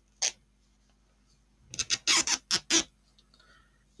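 Yarn rasping as a waste-yarn row is pulled hard out of machine-knitted stitches: a short scratch just after the start, then a quick run of about five scratchy tugs near the middle.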